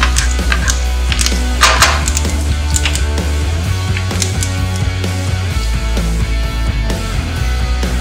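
Background music with a strong steady bass, starting abruptly.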